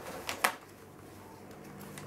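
Two sharp small clicks close together about half a second in, from plastic toys and packaging being handled, then a faint steady low hum.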